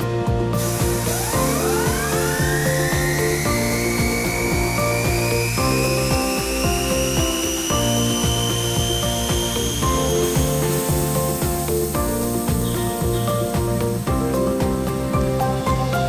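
Background music, with the vibrator motor of a bulk bag filler's densification table spinning up after being switched on: a whine that climbs quickly in pitch, levels off high, and stops about ten seconds in.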